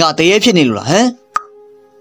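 A voice narrating a story in Burmese for about the first second, then a single sharp click, over faint held background-music tones.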